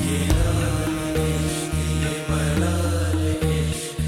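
Music with deep, held notes that change pitch in steps every half second or so.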